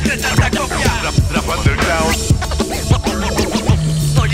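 Hip hop beat with turntable scratching: short scratched sounds sweep up and down in pitch over regular drum hits and a steady bass line.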